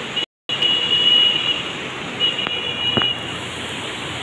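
Floodwater of a swollen, muddy river rushing, with heavy rain falling: a steady noise that cuts out briefly just under half a second in. A thin high tone sounds twice over it, and there is a click about three seconds in.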